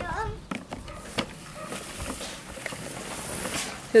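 A small child's voice, brief, then faint outdoor background with a couple of light knocks about half a second and a second in.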